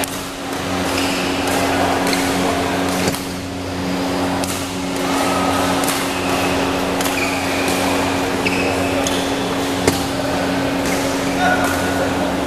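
Badminton hall ambience: a murmur of voices over a steady low hum, broken by scattered sharp clicks and knocks, about eight across the stretch.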